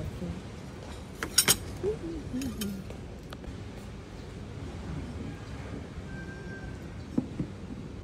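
Tableware clinking at a breakfast table: two sharp clinks about a second and a half in, then a few lighter ones, over a low murmur of voices.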